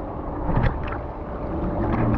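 Pool water sloshing against an action camera at the surface, heard partly from underwater as muffled gurgling, with a few small splashes from a swimmer.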